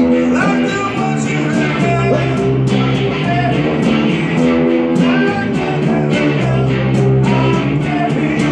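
Guitar and bass playing an instrumental passage of a rock song, with steady strummed chords.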